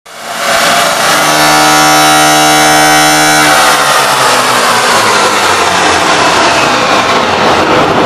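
Hardstyle music played very loud over a club sound system, with a long held tone for the first few seconds that then breaks into a dense noisy wash.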